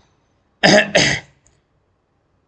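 A man coughs twice in quick succession, two short, loud bursts less than half a second apart.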